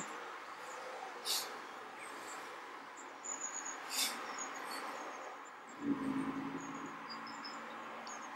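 Quiet room tone with a faint steady hiss, a few faint high chirps and two brief soft taps, one about a second in and one about four seconds in. A short low hum comes near six seconds.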